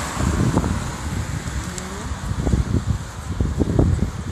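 Wind buffeting the microphone: irregular low rumbling thumps over a steady outdoor noise.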